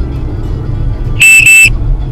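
Jado D230 mirror dashcam's lane departure warning giving its double beep, two short high beeps back to back just past a second in: the car has drifted out of its lane. Steady road and engine rumble in the car cabin underneath.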